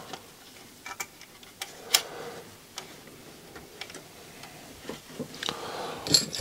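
Scattered light clicks and taps of plastic and metal parts being handled as a CD drive mechanism is fitted into a CD player's chassis, the sharpest click about two seconds in.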